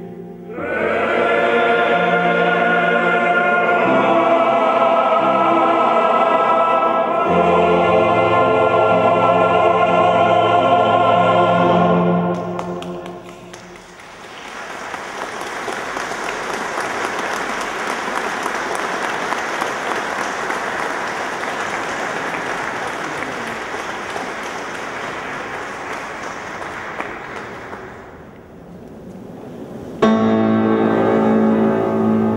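A men's choir sings sustained chords that end about twelve seconds in, followed by about fourteen seconds of audience applause.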